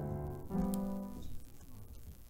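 Piano playing slow, held chords. A new chord is struck about half a second in and left to die away, fading quieter toward the end.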